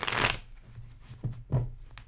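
A tarot deck being shuffled by hand: a quick burst of riffling cards right at the start, then a few soft taps as the cards are handled.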